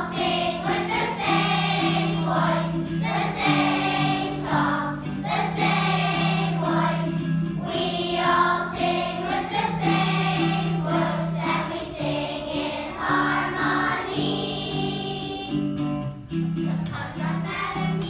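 A children's choir singing a song together in phrases of a few seconds, over a steady, low, held accompaniment.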